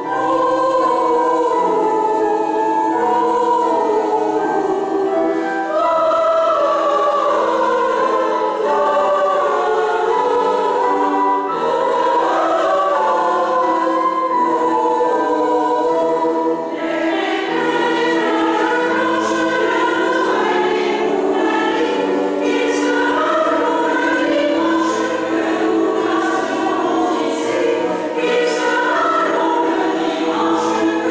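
Mixed choir of women's and men's voices singing in a church, with the hall's reverberation. The singing grows brighter in tone a little past halfway.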